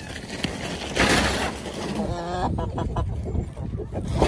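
Chickens in a wire-mesh coop, with a brief cluck-like call around two seconds in. Wind rumbles on the microphone throughout, and a short burst of rustling comes about a second in.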